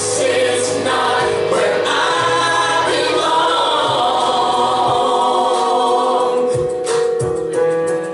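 Gospel worship song sung with musical accompaniment, the voices holding one long note through the middle. Sharp, regular beats join in near the end.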